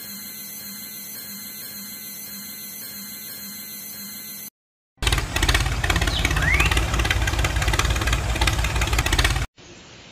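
A quieter steady hum with a faint regular pulse stops abruptly about four and a half seconds in. After a brief gap a much louder engine runs with a rapid, even beat and heavy bass, then cuts off suddenly near the end.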